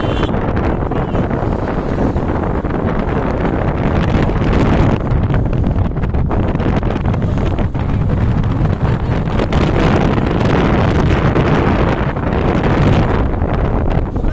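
Loud wind buffeting the microphone of a camera moving at road speed in the open air, over a low, steady rumble of road and vehicle noise.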